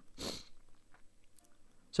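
A short breath near the start, then a few faint clicks about a second and a half in.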